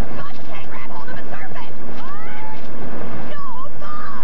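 A woman crying out and shrieking over a loud, continuous rattling rumble like a moving subway car.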